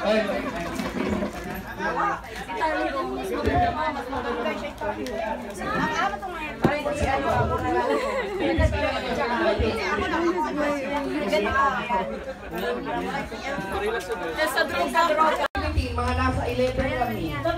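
Several people talking over one another in a busy group: overlapping chatter with no single voice standing out.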